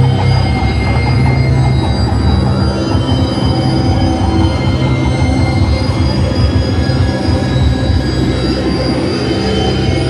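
Live harsh-noise electronics played through a PA from a mixer-and-effects setup: a loud, continuous wall of distorted noise. A heavy low drone sits under several steady high tones, with a fast crackling, flickering texture over them.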